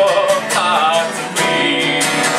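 Two acoustic guitars playing a folk song together, strummed chords with picked notes, in a passage without singing.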